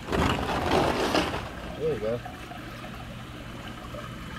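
A gem-mining screen of sand and gravel being shaken in water: a rattling, sloshing wash for about the first second and a half. After it, a steady trickle of running water.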